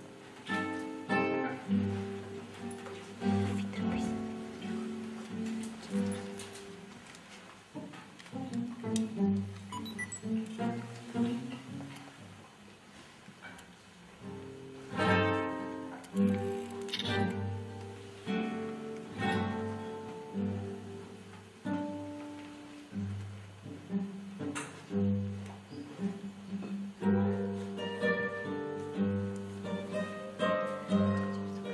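Solo classical guitar playing a South American piece, plucked melody notes ringing over bass notes. Hard strummed chords cut in a little past halfway and again several times near the end.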